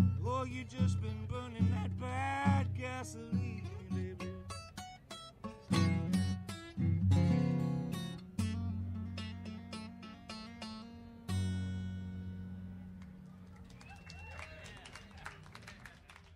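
Solo acoustic guitar playing the closing bars of a country-blues song, picked and strummed, ending on one final chord about eleven seconds in that rings and slowly fades away.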